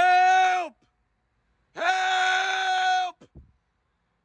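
A woman's voice giving long, held, high-pitched calls, a mock eerie luring call. Each call holds one steady pitch and drops as it ends: the first trails off just under a second in, and a second runs from about two to three seconds in.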